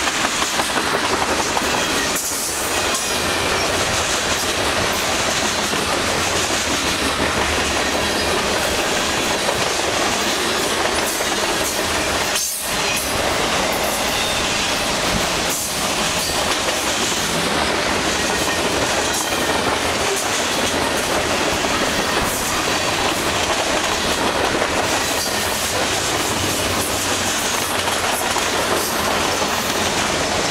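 Freight cars (tank cars and covered hoppers) rolling past at speed close by: the steady, loud noise of steel wheels running on the rails, with a brief dip in the noise about halfway through.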